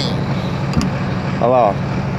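A truck engine idling with a steady low hum, and a light click a little under a second in.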